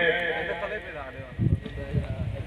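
A man's drawn-out, wavering voice through a loudspeaker, fading away in the first second, followed by two short low thumps.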